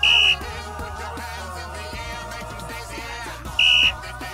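Two short, loud blasts of a referee's whistle, each about a third of a second: one right at the start and one near the end. Background pop music with singing plays underneath.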